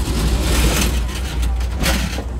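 Loud rumble and rushing noise of the moving Auto Train heard in the open gangway between two passenger cars, with a sharp clack near the end.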